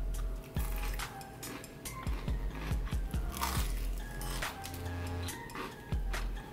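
Chewing of a crunchy bite of fried chicken tender, with a series of irregular crisp crunches, over background music.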